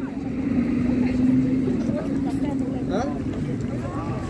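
City street noise: a vehicle engine hums steadily, its pitch dropping to a lower note about halfway through, with faint voices of passers-by.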